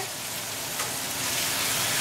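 Ground beef and onions frying in a pan on the stove, a steady sizzling hiss.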